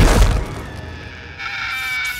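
Animated film soundtrack: a loud crash hits right at the start and dies away, then a few held high notes of music come in about a second and a half in.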